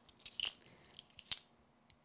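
A few short, faint ticks and scratches of card and pen: a gold paint pen's tip worked around the edges of a small die-cut card flower, two clicks about half a second in and another just past the middle.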